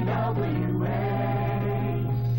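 Closing music with a choir singing sustained chords, moving to a new chord about a second in, over a steady low hum.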